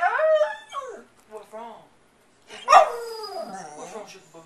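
A dog "talking": drawn-out howling whines that glide up and down in pitch, one bout at the start and a louder one a little past the middle.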